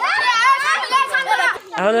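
Children's voices talking excitedly, several high young voices overlapping, with a short lull near the end.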